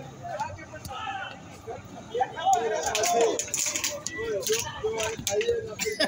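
Several men's voices calling out and talking over one another during an ecuavolley rally, loudest a couple of seconds in, with a few short sharp knocks mixed in.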